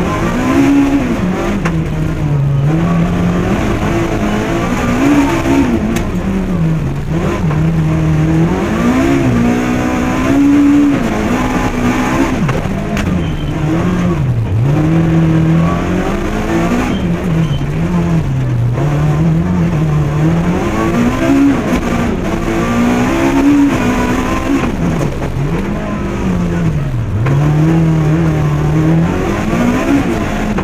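Opel Kadett kitcar's rally engine heard from inside the cabin, revving hard and falling back over and over, a rise and drop every two to three seconds.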